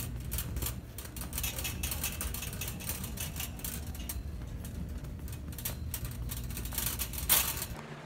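Wire shopping cart rattling and clattering as it is pushed across a hard store floor, over a steady low rumble, with a sharper clatter near the end.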